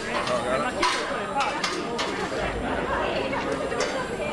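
Chatter of several people talking at once, with no single clear voice, and a few short sharp clicks scattered through it.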